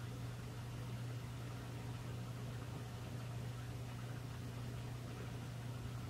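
Room tone: a steady low hum under an even background hiss, with no distinct events.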